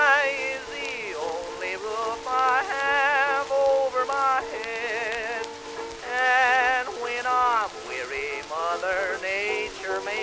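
Old acoustic-era record of a 1920s popular song: a melody line of short notes with wide vibrato and sliding pitch over steady accompaniment chords. Constant record surface crackle and hiss throughout.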